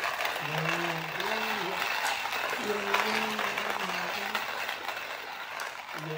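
Portable hand-cranked coffee mill grinding beans: a steady gritty rasping, with a man's voice humming a tune over it.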